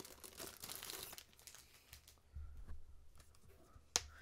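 Packaging crinkling and rustling as it is handled and opened, densest in the first second, then quieter handling, with one sharp click near the end.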